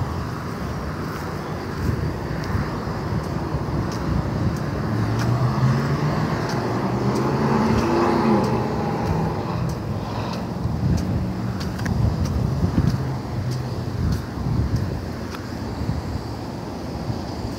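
Road traffic passing on a multi-lane road. One vehicle's engine grows louder and fades again about halfway through.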